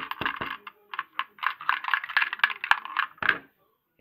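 Plastic Lego bricks clicking and rattling in a rapid, irregular run as the lever mechanism of a homemade Lego snack machine is worked to dispense a snack. The clatter stops a little before the end.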